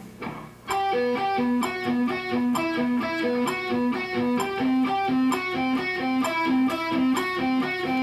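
Electric guitar played with alternate picking across the strings: a pedal-point lick, each higher note bounced off a repeated low C, at a slow steady tempo of 65 beats per minute. The playing starts just under a second in.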